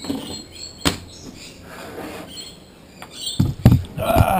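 A thick plastic bag of paydirt crinkles and rustles as it is handled, with a sharp click about a second in. Near the end come several heavy thumps as the bag of dirt is set down on kitchen scales.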